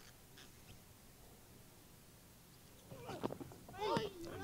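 Near silence of the open ground for about three seconds. Then, near the end, faint voices call out: fielders reacting as the ball beats the bat.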